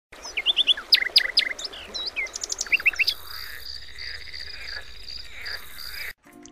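Birds calling: a quick run of sharp, sweeping chirps for the first three seconds. Then a steady high-pitched tone takes over, with fainter calls under it.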